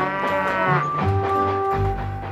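A cow mooing once, over light background music with a held note in the second half.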